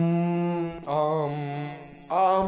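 A man singing long drawn-out notes without accompaniment, like a chant: one note held for almost a second, then a slightly lower, wavering note, and a third, higher note starting near the end after a short break.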